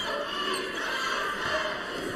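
Basketball arena sound during live play: steady crowd noise with music playing.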